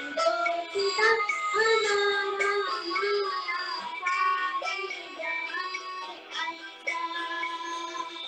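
A young girl singing a song in held, gliding notes over instrumental backing music.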